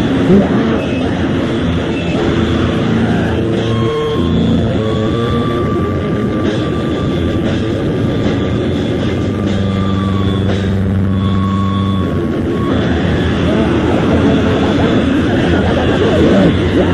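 Lo-fi demo-tape recording of a noise/grind band: distorted guitar and amplifier drone in long held tones, with a thin high feedback whine running through the middle and rougher noise at the start and end.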